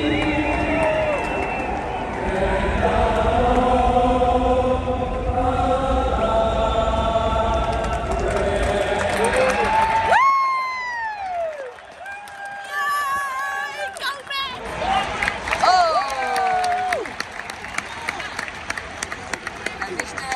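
A choir singing held chords through a stadium's loudspeakers, over crowd noise, for about the first ten seconds. The sound then cuts to quieter crowd sound with a few separate rising-and-falling pitched calls.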